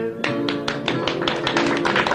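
Acoustic guitar accompaniment of Maltese għana folk music playing a quick run of rapid, evenly spaced plucked notes between sung verses.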